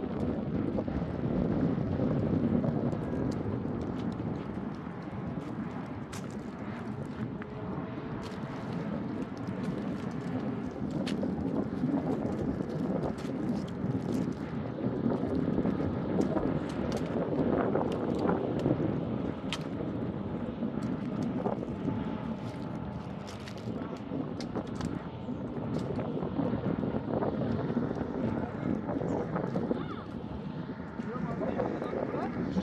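Wind buffeting the microphone in a steady low rush, with scattered small cracks and scrapes from the twigs and branches of a bare tree as a man climbs through it.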